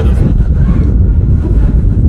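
Wind buffeting a phone's microphone: a loud, steady low rumble with little higher sound.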